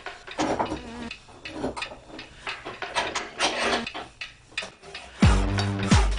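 Irregular knocks and scrapes of an old brush axe being handled and set into a metal bench vise. About five seconds in, electronic background music with a heavy bass beat starts and is the loudest sound.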